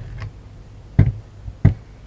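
Aluminium hand-press lemon squeezer knocking twice against the countertop as it is opened out, about a second in and again just over half a second later.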